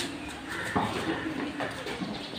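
Quiet background: faint voices with a few light clicks and knocks.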